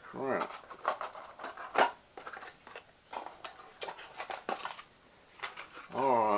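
Irregular sharp clicks and crackles of a GoPro 7's retail packaging being handled and pried at to get the camera free of its box, the loudest click about two seconds in. A short mumble at the very start.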